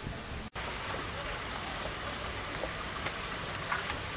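Steady hissing outdoor background noise, broken by a brief silent dropout about half a second in.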